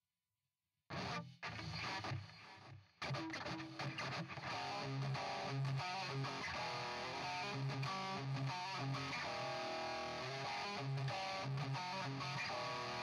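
Ibanez JEM 777 electric guitar played through a Fractal Audio AX8 modeller on a distorted patch. It starts suddenly about a second in, breaks off briefly twice, then plays on continuously with a recurring low note.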